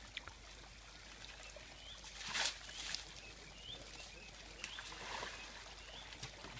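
Young African bull elephant splashing mud and water in a shallow waterhole while mud bathing: one loud splash about two seconds in and a softer one about five seconds in.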